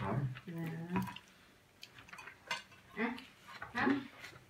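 Light clinks of cutlery and dishes at a table, a few sharp ticks, with short bursts of soft talk in between.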